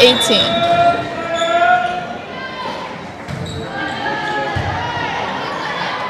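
Volleyball served and then passed in a gymnasium: two dull ball hits, about a second and a half apart near the middle, heard under the voices of spectators.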